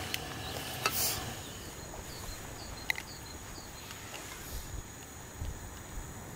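Insects chirping faintly in the evening, a thin steady high chirring with a short run of quick repeated chirps, over a soft hiss, with a few light clicks about one and three seconds in.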